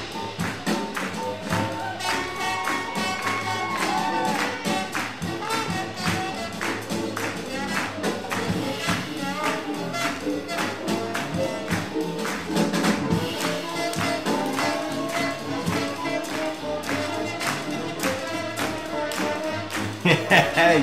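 Live swing jazz band playing with horns and drums, keeping a steady beat.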